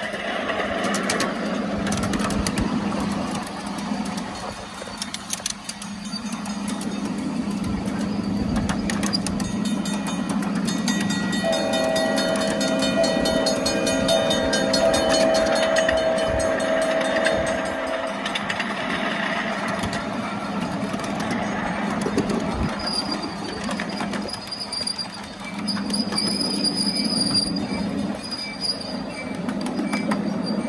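A 7.5-inch gauge live steam miniature train running along its track, its wheels clicking over the rails. About eleven seconds in, the locomotive's whistle sounds one long chord, held for about six seconds.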